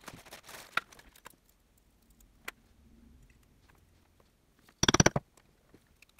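Leather and small hand tools handled on a wooden board: soft rustling and a few light clicks, then a short rapid rattle of clicks about five seconds in, the loudest sound.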